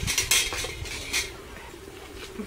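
Metal spoons clinking and scraping against metal cooking pots and plates as food is served, with a cluster of clinks in the first second or so, then fewer and quieter ones.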